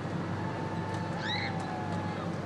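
Steady low hum of an idling boat engine, with one short, high call that rises and falls about a second and a half in.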